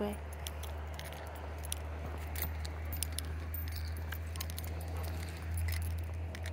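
Light, scattered metallic jingling and clinking of small metal pieces, over a steady low rumble, during a walk with a dog on a leash.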